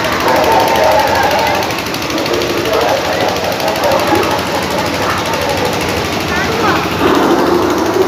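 A dense crowd of voices in a busy street, over a steady, rapid mechanical rattle.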